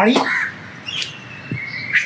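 A bird calling outdoors: two thin, high whistled notes about a second long each, the first falling slightly, each starting with a short sharp click.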